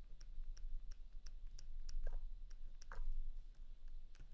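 A stylus tapping on a drawing tablet, about three light clicks a second as dots are put down one by one, with two brief scratchy pen strokes about two and three seconds in.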